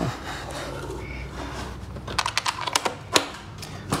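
A quick run of sharp clicks and taps, about two to three seconds in, from handling a metal drywall taping banjo while recovering the mud-coated paper tape that has come loose from it.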